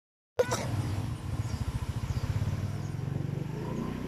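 Small motorcycle engine running while riding, a low pulsing hum that rises slightly in pitch near the end. The sound begins with a sharp click after a brief silence.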